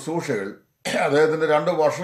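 A man speaking steadily, with a short pause about half a second in.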